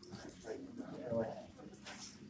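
Indistinct background chatter of people talking, with one higher voice rising out of it about a second in.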